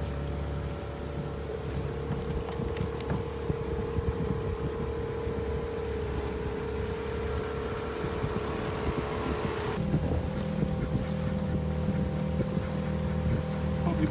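Small outboard motor pushing an inflatable boat, running at a steady note that shifts about ten seconds in, with wind buffeting the microphone.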